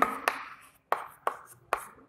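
Chalk writing on a chalkboard: four sharp taps of the chalk as strokes begin, each followed by a short scratch.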